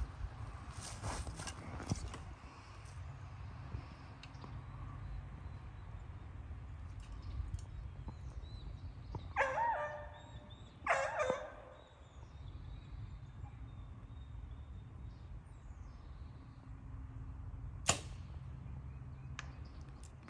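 A Mathews V3 compound bow is shot once near the end, giving a single sharp snap at release. A steady low rumble of wind on the microphone runs under it, and two short pitched calls are heard in the middle.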